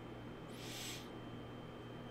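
Steady low hum and hiss of a quiet room, with one brief soft hiss about half a second in.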